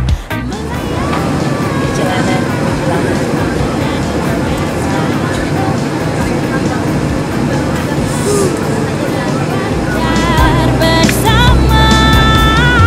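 Voices chattering over a steady noise, with music and singing coming back in near the end.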